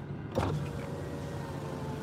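A car's electric window motor running with a steady whine for about a second and a half, over the low hum of the idling engine.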